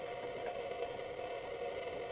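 A steady background hum with faint taps from a utensil stirring a thick milk mixture in a blender jar, the blender switched off.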